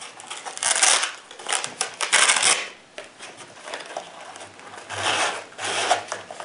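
Hook-and-loop fastener on a padded ankle holster's strap being peeled apart, several short rasping tears: three in the first three seconds and two more near the end.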